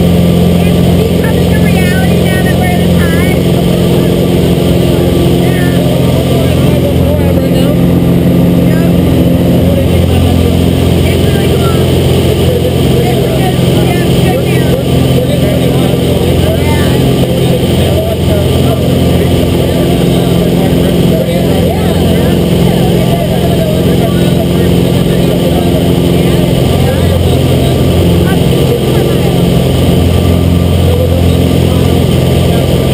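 Small jump plane's engine and propeller droning steadily at constant power, loud inside the cabin, with faint voices under it.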